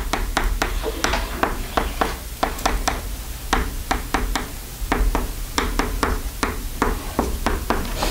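Chalk writing on a chalkboard: a quick, irregular run of sharp taps and clicks, several a second, as each stroke of the equations hits the board.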